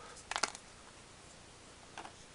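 Cardboard game tokens being pressed out of a die-cut punchboard: a quick cluster of small snaps and clicks about half a second in, then only faint handling.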